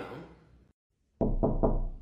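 Three quick knocks on a door, about a second in.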